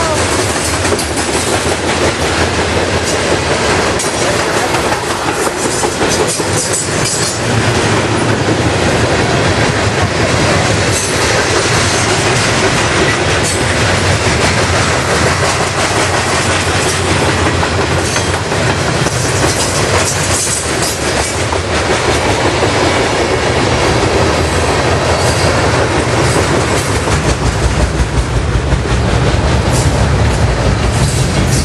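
Freight train's cars rolling past, a steady, loud rumble of steel wheels on rail.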